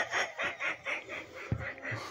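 A person laughing in a run of quick, breathy snickers, about five a second, that tapers off about one and a half seconds in.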